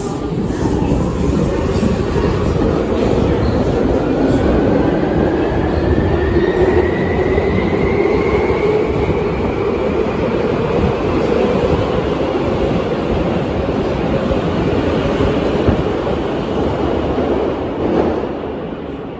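Tokyu 8500 series electric train accelerating away from a subway platform: a rising whine from its traction motors climbs steadily in pitch over the first nine seconds or so, over a steady rumble of wheels on rail as the cars pass. The sound eases near the end as the last car clears the platform.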